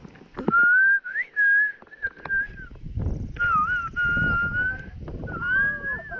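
A person whistling, close to the microphone: a few long, fairly level notes with small slides up and down, in three stretches with short gaps, over low water and wind noise.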